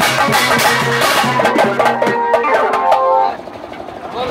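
Marfa music: fast, rhythmic drumming with some pitched sound over it, which stops about three seconds in, leaving quieter background noise.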